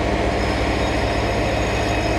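The motor of a floating pontoon swing bridge running steadily with a low, pulsing rumble as the bridge starts to swing open.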